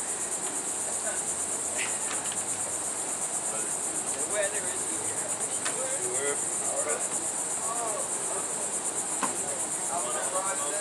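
A steady, high-pitched insect chorus, a fast pulsing buzz.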